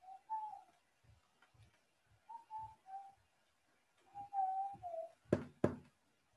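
Soft whistle-like notes, clear single pitches that step up and down, come in three short groups of two or three notes each. Two sharp clicks follow about five seconds in and are the loudest sounds.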